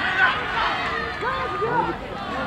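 Several voices shouting and yelling over one another at a rugby match, from players and spectators on the sideline, while play goes on.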